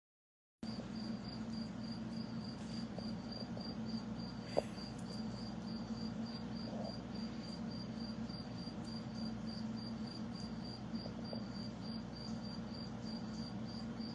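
Steady low hum of aquarium equipment, such as a filter or pump, with a high cricket-like chirp pulsing about two or three times a second throughout. A single sharp click comes a little over four seconds in.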